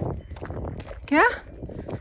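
A man's voice asking "Okay?" with a rising pitch, just after low rustling and a few light knocks.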